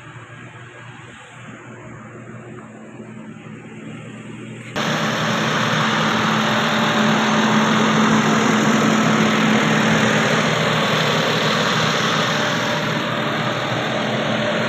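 Toyota HiAce van's engine idling steadily; about five seconds in the sound jumps suddenly to a much louder, steady rushing noise that runs on over the idle.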